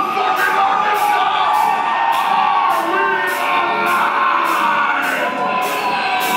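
Live heavy band playing: cymbals struck about twice a second over ringing, sustained guitar tones, with little bass or kick drum yet. Crowd noise is mixed in.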